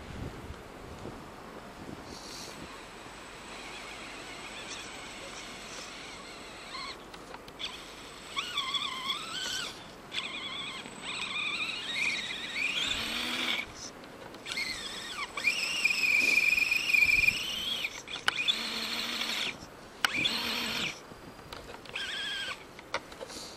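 Axial radio-controlled crawler's electric motor and geartrain whining in repeated throttle bursts, the pitch rising and falling with each burst and cutting off between them. The truck lies on its side in a snowbank and makes no headway.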